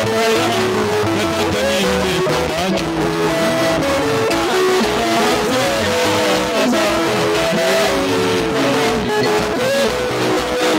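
Live worship music from a church band: voices singing a sustained, gliding melody over keyboard and drums.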